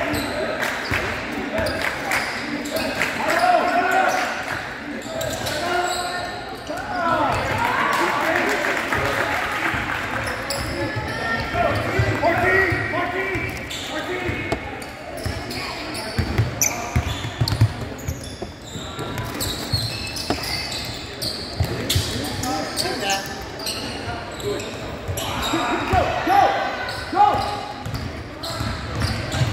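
Basketball bouncing on a hardwood gym floor during play, with short sharp knocks and voices of players and spectators echoing in a large hall.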